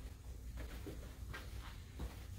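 Faint footsteps and scuffs on a hard floor, a few soft separate taps, over a low steady room hum.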